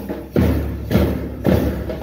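Marching bass drum beaten at a steady march tempo, about two strokes a second, four in all, each a low boom that dies away before the next.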